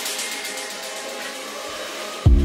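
Electronic dance music in a breakdown: the drums and bass are out, leaving a steady hiss-like noise wash with faint held synth tones that eases slightly in level.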